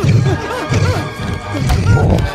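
Horror film soundtrack: a pounding low beat about twice a second under a repeated figure of short rising-and-falling squeals.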